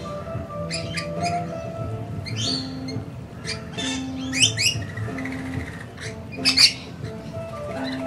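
Rainbow lorikeets giving short, shrill screeching calls, scattered through, with the loudest ones about halfway and about two-thirds of the way through. Background music with held notes plays under them.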